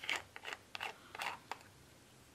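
Black plastic screw cap of a small ink bottle being twisted off: a quick series of short, scratchy scrapes over the first second and a half.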